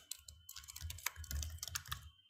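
Typing on a computer keyboard: a quick, faint run of keystroke clicks.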